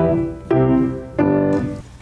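Grand piano playing a G major chord over a D in the bass (a G/D slash chord), struck three times about two-thirds of a second apart, each chord ringing and fading before the next.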